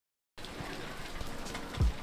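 Steady hiss of rain falling, with two short low thumps near the end.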